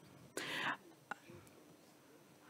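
A single short breath or whispered murmur close to the microphone, followed by a faint click; otherwise quiet between sentences of speech.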